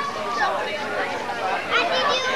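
Overlapping chatter of young children and adults talking at once, no single voice clear.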